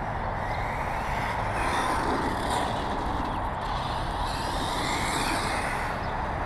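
Electric RC short-course truck (custom 2WD Slash with a Castle Blur speed control and Alphastar motor) driving on asphalt: a high motor whine and tyre hiss that swell and fade twice as it runs around, over a steady low rumble.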